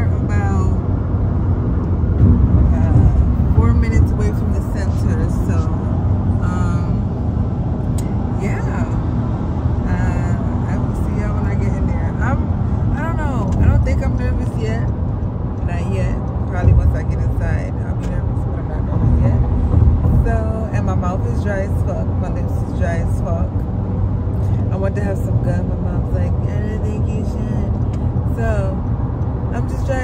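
Steady low rumble of a car on the move, heard inside the cabin, under a woman's voice and music playing.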